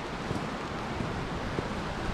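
Steady rushing noise of a river running over rocks and of falling rain, with wind rumbling on the microphone.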